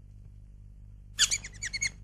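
A quick run of about half a dozen short, high, bird-like chirps lasting under a second, starting a little past the middle, over a faint steady hum.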